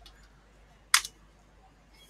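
A single sharp click about a second in from a computer keyboard key being struck, as the command is entered. Otherwise quiet room tone.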